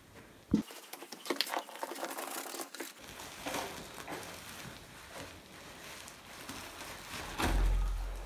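Foil-faced pipe insulation crinkling and rustling as it is handled, with scattered small clicks and scuffs, and a louder low thump near the end.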